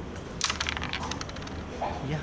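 Carrom striker shot: a sharp click as the striker strikes the carrom men about half a second in, then a rapid rattle of wooden coins clicking against each other and the board for about a second. The striker touches two coins at once, an accidental double touch.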